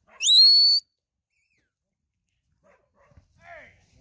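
A handler's sharp rising whistle, about half a second long, right at the start: a command to a working stock dog herding cattle.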